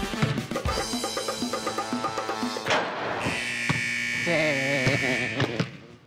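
Upbeat background music. Near the start a basketball bounces a few times on a hardwood gym floor, and in the second half a wavering, bleating goat-like sound effect plays over the music.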